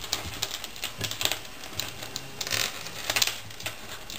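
Small irregular clicks and light rattling of beads and short metal tubes strung on copper wire as a beaded wire snowflake ornament is handled and adjusted.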